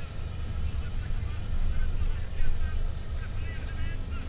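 Steady low rumble of a car's engine and road noise, heard inside the cabin while driving.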